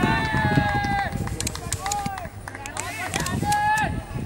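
Several voices shouting during play: long drawn-out calls near the start and again near the end, with shorter cries between and a few sharp clicks.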